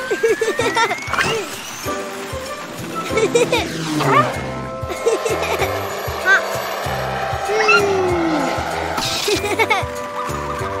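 Cartoon soundtrack: light background music under wordless, babbly character vocal sounds, with a long rising whistling glide in the first second and a shorter falling glide later.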